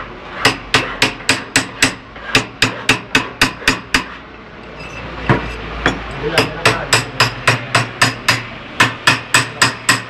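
Small hammer striking a silver ring on a steel ring mandrel to shape it. The sharp metallic taps come about three a second, stop for about two seconds midway, then resume.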